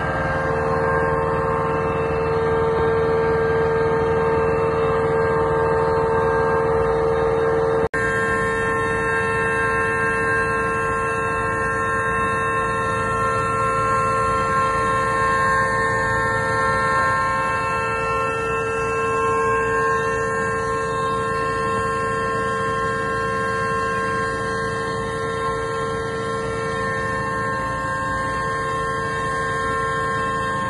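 Steady machine hum of several held tones at unchanging pitch, with a brief break about eight seconds in.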